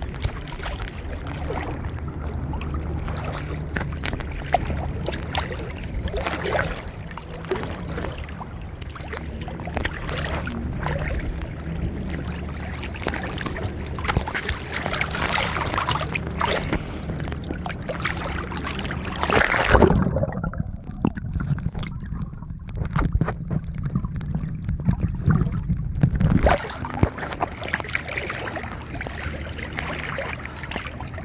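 Sea waves lapping and splashing around a camera held at the water surface, over a steady low hum. A louder wash comes just past the middle, followed by several seconds where the sound goes muffled before the lapping returns.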